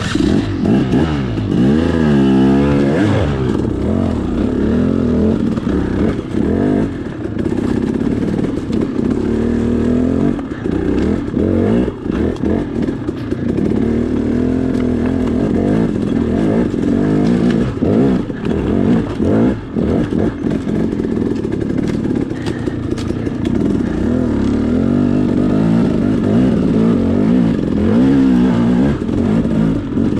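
Dirt bike engine working up a rocky trail, its revs rising and falling over and over as the throttle is blipped and rolled on and off.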